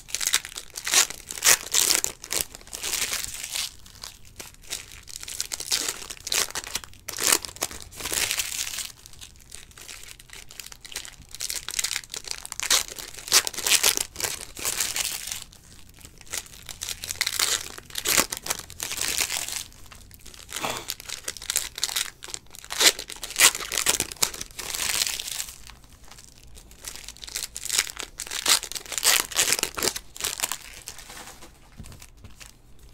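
Foil trading-card pack wrappers being crinkled and torn open by hand, in repeated bouts of crackling every couple of seconds with short pauses between.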